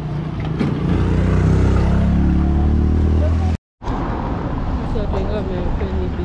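A motor vehicle's engine passing close on the road, loud for about three seconds before the sound cuts off abruptly. Quieter street noise with voices follows.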